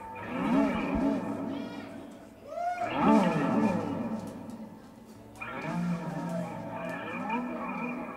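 Live band music starting up: electric guitar playing sliding, bending phrases, in three runs with short gaps between them.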